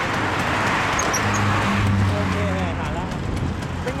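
Road traffic going by, loudest in the first two seconds, then a steady low engine hum from a vehicle for about a second and a half, with faint voices in the background.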